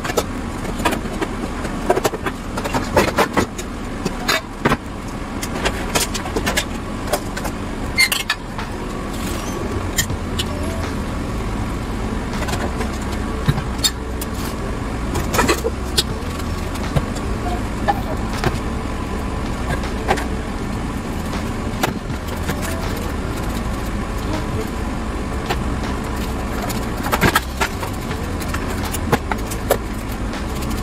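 Kitchen clatter of pots, pans and dishes being handled, with frequent short knocks and clinks over a steady low rumble.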